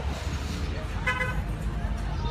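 A short car horn toot about a second in, over the low rumble of street traffic.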